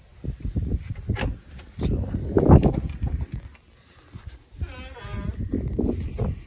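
Wind buffeting the microphone in low rumbling gusts, with knocks and handling noise from the moving phone. A short wavering pitched sound follows about five seconds in.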